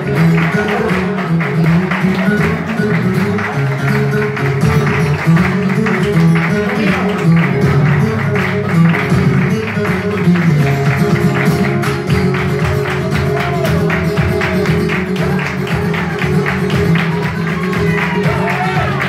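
Live flamenco guitar played with quick strummed and picked strokes, accompanied by rhythmic hand clapping (palmas).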